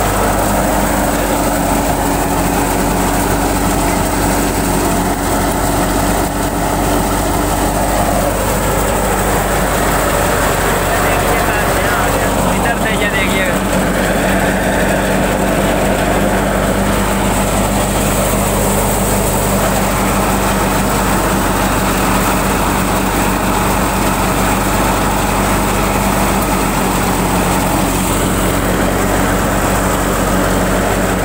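Tractor-driven wheat thresher running while threshing, a loud steady mechanical din with an engine hum. The hum shifts lower about twelve seconds in.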